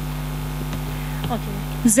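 Steady electrical mains hum from the stage sound system, a constant low drone, with a woman's voice through the microphone starting near the end.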